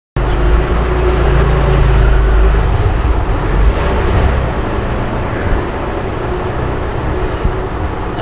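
Steady low rumble and hiss of background noise, heaviest during the first few seconds and easing after about four seconds.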